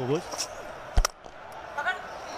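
Cricket match broadcast sound: steady crowd noise, with a single sharp crack of the bat striking the ball about a second in, sending it straight up in the air for a catch.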